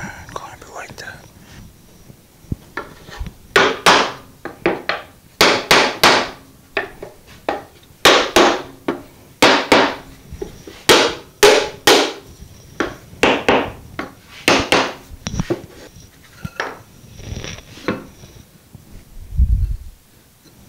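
Wooden mallet tapping the plywood panels of a cajon kit to seat the dry-fitted joints: a series of about fifteen sharp knocks, often in pairs, then a few lighter taps. A dull thump near the end as a panel is set down on the box.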